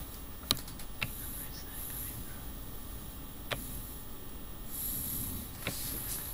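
A few sharp clicks spread over several seconds, the loudest about half a second in, over a steady hiss of room noise.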